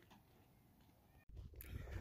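Near silence for about a second, then an abrupt cut to faint outdoor background noise that grows slightly louder.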